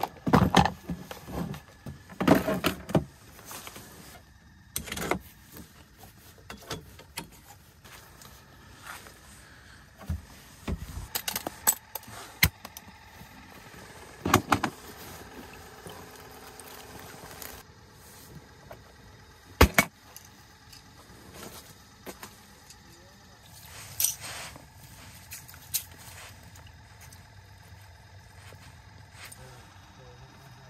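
Fishing gear being handled: plastic tackle boxes clattering and rattling in a tackle bucket, then a live-bait cooler being opened. The sound is a string of scattered clicks and knocks, loudest in the first few seconds and with a few sharp knocks near the middle.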